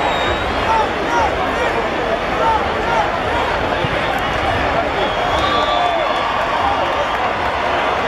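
Large stadium crowd at a football game: many voices shouting and chattering at once, a dense steady din.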